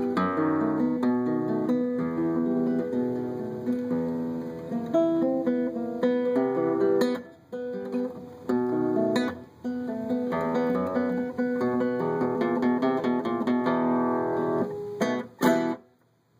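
Solo nylon-string classical guitar, fingerpicked, playing the closing bars of a mambo-style piece, with two brief breaks midway. It ends on a couple of sharp final chords shortly before the end.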